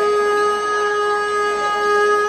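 Carnatic bamboo flute (venu) holding one long, steady note, with faint accompaniment beneath.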